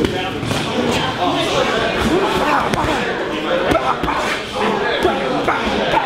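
Several voices talking over each other in a gym, with sharp smacks of gloved strikes landing every second or so.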